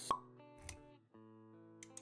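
Intro sound effects over held music notes: a sharp pop just after the start, then a short low thud about half a second later. A few quick clicks come in near the end.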